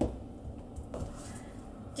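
Faint, soft sounds of sifted flour pouring into a glass mixing bowl of batter and a silicone spatula starting to stir it in, with a soft scrape about a second in.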